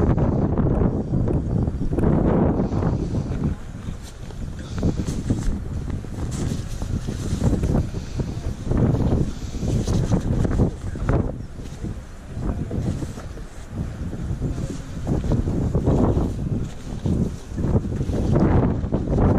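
Wind buffeting the microphone: a heavy, uneven rumble that rises and falls in gusts.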